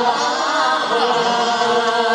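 Several voices singing a Cantonese pop song together through microphones over its accompaniment, holding long notes.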